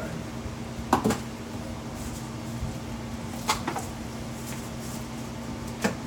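Unboxing handling sounds: a few sharp knocks and taps of small boxed parts and packaging being handled, a pair about a second in, another pair around three and a half seconds in and one just before the end, over a steady low hum.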